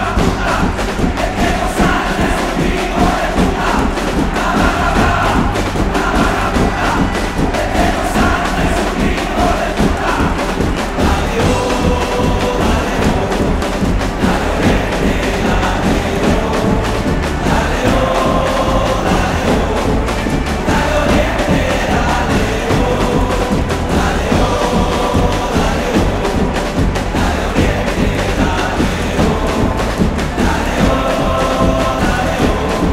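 Live band music with heavy drumming, sung as a football supporters' chant, with a stadium crowd chanting along.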